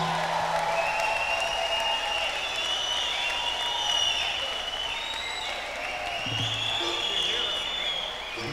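Audience and performers applauding at the end of a samba song, with high cheering shouts rising and falling over the clapping.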